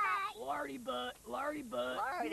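A cartoon character's wordless voice sounds, several short vocal noises in a row that slide up and down in pitch.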